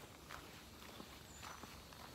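Faint footsteps of a person walking on a dirt forest trail, soft irregular steps about every half second.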